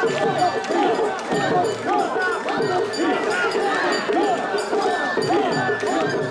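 A large crowd of mikoshi carriers chanting in a steady rhythm as they bear a heavy portable shrine, with many voices overlapping. The shrine's metal fittings clink and jingle in time with the carriers' steps.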